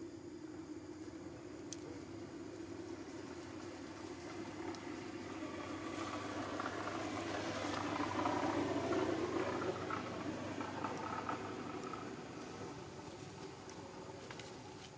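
A motor engine humming steadily, swelling to its loudest a little past halfway and then fading.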